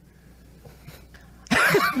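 Low room hum, then about a second and a half in, a sudden short, loud vocal burst from a man.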